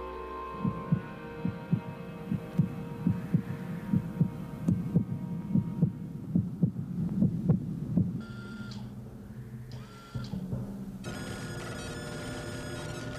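Low, heartbeat-like thudding in the soundtrack, often in pairs, about three beats a second, stopping about eight seconds in. Two short electronic beeps follow, then a steady electronic hum from control-room equipment near the end.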